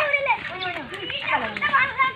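Children's high-pitched voices calling and chattering as they play.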